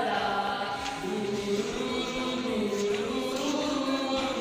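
A group of teenage schoolboys singing together in unison, holding long sustained notes.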